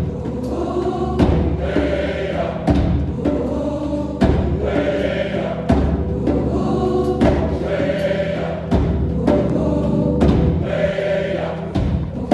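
A large gospel mass choir sings with live band accompaniment. A deep drum beat lands about every second and a half.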